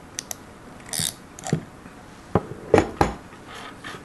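Hand crimping tool working on a pin contact crimped onto a wire: a handful of separate sharp mechanical clicks and knocks, loudest about three seconds in, as the tool is worked and opened and the crimped pin comes out.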